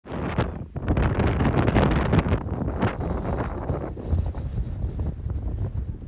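Wind buffeting the microphone in gusts, a loud rumble that is heaviest in the first three seconds and eases somewhat toward the end.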